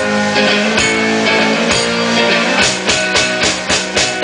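One-man band's electric hollow-body guitar strummed over drum hits, with no vocals. The drum beats come about once a second, then quicken to about three or four a second in the second half.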